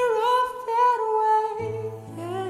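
Recorded song: a voice holds a long high wordless note that wavers slightly in pitch, and a low steady note comes in near the end.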